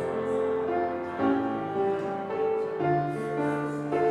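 Slow instrumental keyboard music, likely a postlude: sustained chords moving every half second to a second, with a held bass note near the end.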